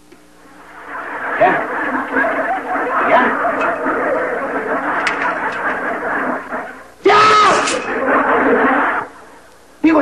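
Studio audience laughter from a sitcom laugh track swells about a second in and carries on for several seconds. Near the end comes a louder two-second burst with a wordless voice that rises and falls in pitch.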